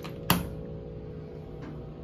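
A single sharp click from an elevator car-call button being pressed, about a third of a second in, over a steady low hum in the cab.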